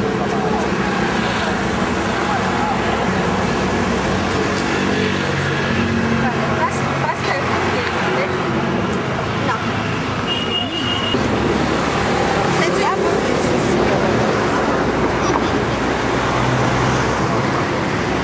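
Street noise: road traffic running steadily, with people's voices talking indistinctly throughout. A short, high beep sounds about ten seconds in.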